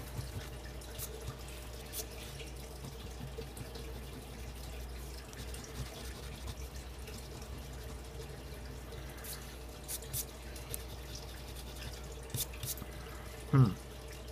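A coin scratching the coating off a scratch-off lottery ticket in short, scattered scrapes and taps, over a low steady hum.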